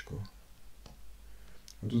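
A couple of faint clicks from a stylus tapping on a tablet while handwriting, in a pause between a man's speech.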